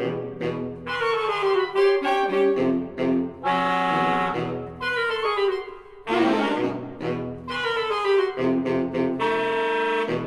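Recorded saxophone quartet playing a lively, dance-like passage: runs of short, detached chords broken by a few longer held chords.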